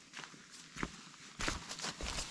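Hiking boots stepping on a dirt forest trail, with a few separate footfalls passing close by.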